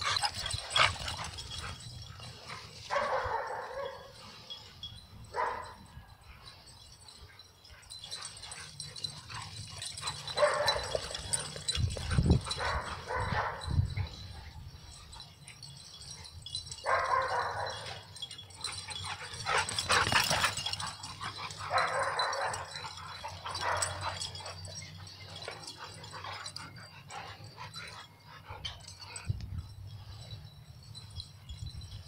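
Pit bulls play-fighting, making dog vocalizations in about half a dozen short bursts, each lasting about a second, with a few low thumps near the middle. This is rough play, not a real fight.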